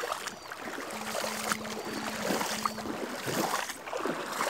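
Shallow stream running over a pebble bed: a steady wash of water with gurgles through it.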